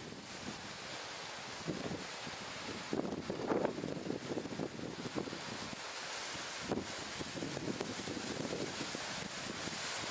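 Gusty wind blowing across the microphone, a steady rush with irregular stronger gusts, ahead of a monsoon thunderstorm.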